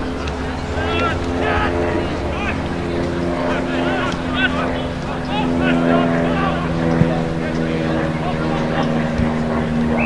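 A motor hums steadily, its pitch shifting slightly about halfway through, under scattered faint distant shouts. A single sharp click about seven seconds in.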